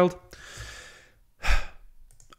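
A man's voice trails off at the start, followed by a long breathy exhale lasting under a second and a short mouth sound about a second and a half in.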